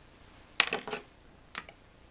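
A quick clatter of small hand tools being handled, about half a second in, then a single light click about a second later.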